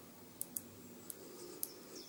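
Small neodymium magnet balls clicking lightly against each other as a cluster is pressed into place on the structure: a few short, sparse clicks.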